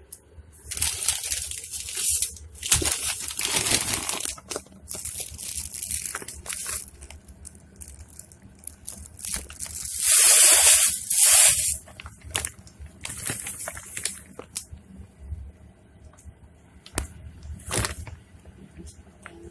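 Hands working at a stainless steel kitchen sink: a series of irregular noisy bursts of rustling and splashing, the loudest lasting over a second about ten seconds in.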